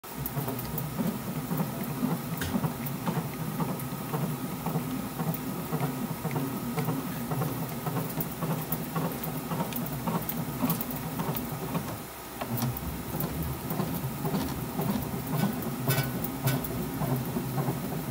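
A 2024 DeMarini Voodoo One BBCOR bat turning under pressure between the rollers of a bat rolling machine during heat rolling: a steady rumble with many small clicks and ticks. It dips briefly about twelve seconds in.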